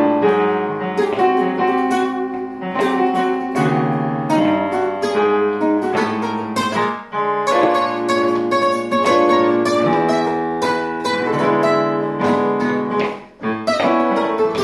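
Guitars playing a blues progression that climbs chromatically, a half step every six bars, through all twelve keys, with brief breaks in the playing about halfway through and near the end.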